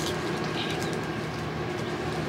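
Corn husks being pulled and torn off an ear of sweet corn, a few soft crackly rustles, over a steady low hum.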